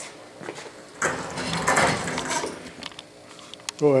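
Steel lathe table on casters rolling across the garage floor, with irregular rattling and clatter from the 1952 South Bend 9-inch lathe riding on it, loudest from about a second in.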